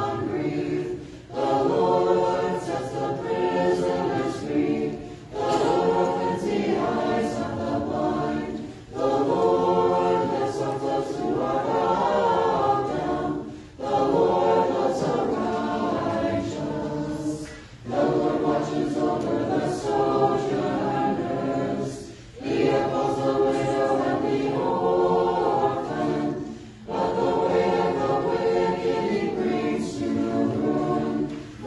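Orthodox church choir singing liturgical chant a cappella, in phrases of about four seconds with a short breath pause between each.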